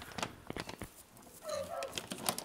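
Faint, scattered clicks and scrapes of a small pick and brush working at a toy fossil-excavation block, with a short vocal sound about one and a half seconds in.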